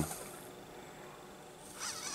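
Hobby servo motors of a 3D-printed EEzyBotArm 2 robot arm whining as the arm moves, the pitch gliding up and down. The whine starts near the end and is faint before that.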